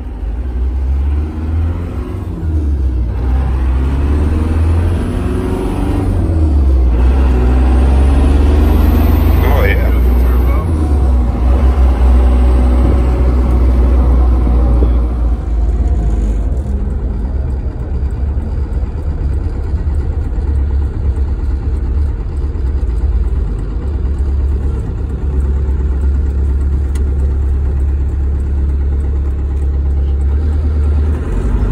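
Cummins diesel engine of a Jeep Wrangler TJ heard from inside the cab while driving: a deep, steady rumble that grows louder about four seconds in and eases back after about fifteen seconds.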